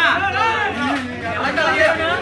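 Several men talking at once: overlapping crowd chatter.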